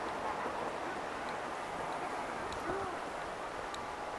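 Steady outdoor city ambience: a general murmur with faint, indistinct voices, and a short low tone that rises and falls about three seconds in.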